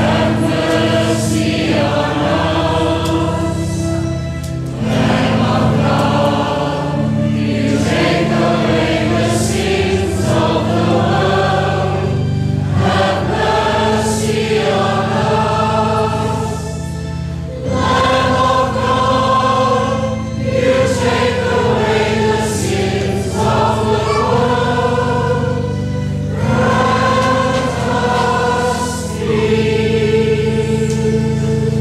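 A church choir singing a slow hymn in phrases of a few seconds each, over sustained low accompanying notes.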